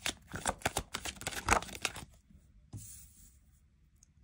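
Tarot cards being shuffled and handled: a quick run of crisp flicks and taps for about two seconds, then a brief soft slide a little before the end.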